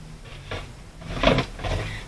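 A couple of brief, soft handling noises of paper-craft tools and paper on a cutting mat, about half a second and a second and a quarter in.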